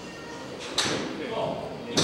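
Two sharp golf-shot impacts about a second apart, one in the middle and one at the end, each with a short echo in the hall: golf balls being struck at an indoor driving range.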